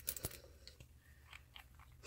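Glass nail polish bottle being handled and its cap unscrewed: a few sharp clicks at the start, then faint crackles and ticks.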